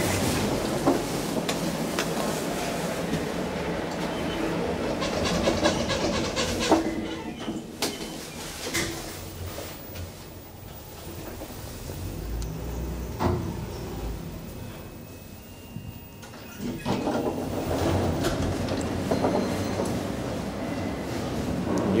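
ITK passenger elevator in use. Background noise drops about eight seconds in, giving a quieter stretch with a low rumble of the car running and a few sharp clicks. The louder background returns about 17 seconds in.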